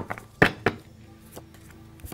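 A few sharp taps of a tarot deck being squared and cards laid down on a wooden table, most of them in the first second, over faint background music.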